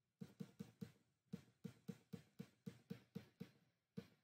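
A quick run of light clicks at a computer, about four a second, with a short break about a second in.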